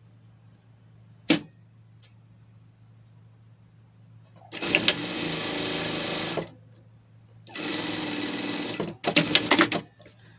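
Industrial lockstitch sewing machine stitching a seam in three runs: about two seconds, then a second and a half, then a short burst near the end, over a low steady hum. A single sharp click comes about a second in.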